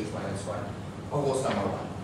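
A man's voice saying a few words that are not clearly made out, about a second in, with chalk tapping and scraping on a blackboard as he writes.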